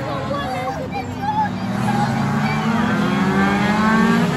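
Race car engines on the circuit, one of them rising steadily in pitch as it accelerates through the second half, growing a little louder, with spectators' voices over it.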